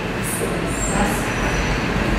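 Sheets of paper rustling as they are handled, a few short crisp swishes in the first half over a steady low background hum.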